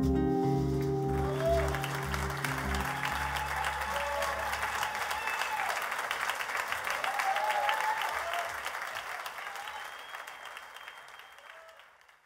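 A live band's last sustained chord rings out and dies away over the first few seconds as the audience breaks into applause with a few shouts. The applause then fades out near the end.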